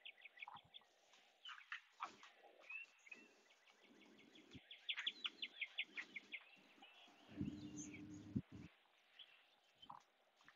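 Faint outdoor songbirds chirping, with a run of quick trills about halfway through. A brief low rumble about three-quarters of the way in.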